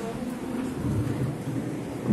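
Low rumbling and rubbing handling noise from a phone camera being gripped and swung about.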